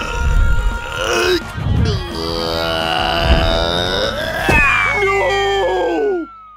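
Cartoon soundtrack: music under a long, drawn-out vocal groan, then a whistle that slides steadily down in pitch near the end.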